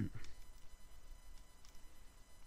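Faint, steady high-pitched electrical whine over low hiss, with a few faint clicks. The tail of a spoken word sits at the very start.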